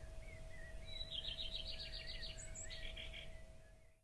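Small birds singing: short whistled chirps, then two rapid trills of repeated notes about a second apart, over a low steady rumble. The sound fades out at the very end.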